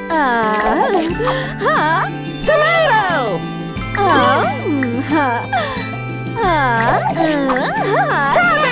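Children's cartoon music with a steady bass line that moves to a new note every couple of seconds, overlaid by wordless cartoon-character voices swooping up and down in pitch.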